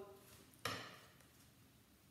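A single short scratch of a knitting needle drawn along card, scoring a fold line, starting about half a second in and fading within half a second.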